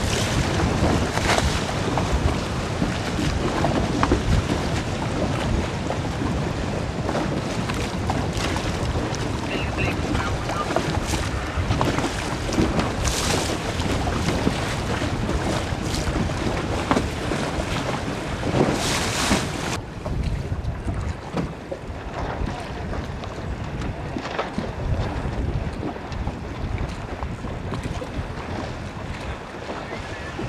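Wind buffeting the microphone over the rush and slap of choppy water, with a few sharper gusts. About two-thirds of the way through, the sound turns abruptly duller as the hiss at the top drops away.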